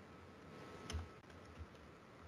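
A few faint keystrokes on a computer keyboard, the clearest about a second in, with two softer ones after it.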